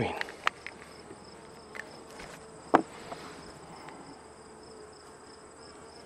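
Honeybees humming steadily on and around a frame lifted from an open nuc, with a steady high-pitched insect trill behind them. One sharp tap a little under halfway through.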